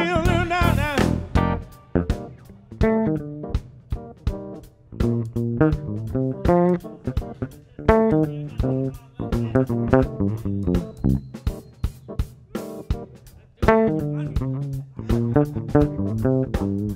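A small jazz band improvising live: drum kit with busy, irregular hits, electric bass lines and keyboard chords.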